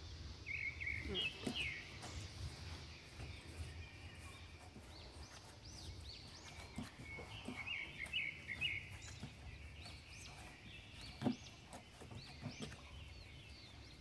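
Faint birds chirping in the background over a low hum, with one short soft knock about eleven seconds in.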